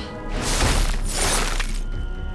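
A cartoon crash-and-shatter sound effect, a noisy burst lasting about a second and a half, over a dramatic orchestral score.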